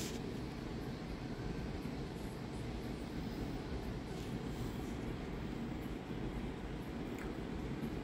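Faint, steady low background noise with no distinct events: room tone.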